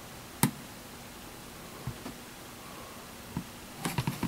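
Quiet room tone broken by one sharp click about half a second in and a few fainter taps later: a smartphone being handled and shifted against the hard top of a Bluetooth speaker.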